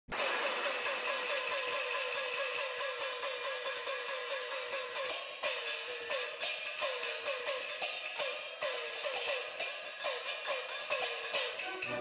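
Orchestral introduction to a Peking opera aria. A fast repeating figure plays for the first five seconds, then a slower one, with sharp percussion strikes joining about five seconds in.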